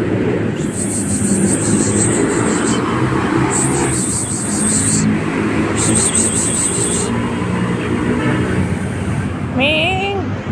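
A cat meows once near the end, a short rising, wavering call, over a steady background of street traffic. Three high, pulsing trills sound a few seconds apart in the first half.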